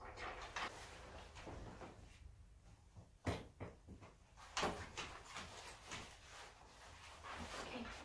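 Quiet rustling and clinking as a dog's leash and harness are handled while a Labrador moves about, with a sharp knock a little past three seconds in and another burst of handling noise about a second later.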